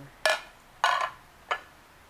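Glazed ceramic pottery plates knocking against each other as they are handled and stacked on a wooden table: three sharp clinks, about a quarter second, one second and one and a half seconds in, the last one lighter.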